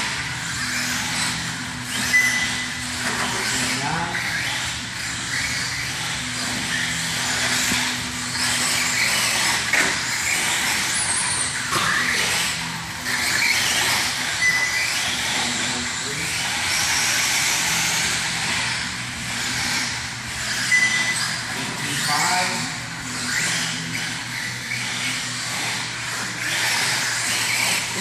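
Radio-controlled car driving laps on an indoor track: a high motor whine that rises and falls with the throttle, mixed with tyre noise and short squeals.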